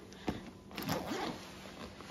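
Zipper on a black fabric bag being pulled open: a small knock, then a couple of quick rasping zips about a second in.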